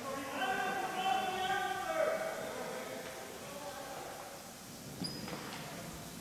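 Raised voices of players echoing in a gymnasium, loudest in the first two seconds and then fading.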